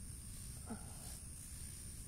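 Quiet outdoor background: a steady low rumble, such as wind or handling on a phone microphone, under a faint steady high whine, with one brief faint sound about two-thirds of a second in.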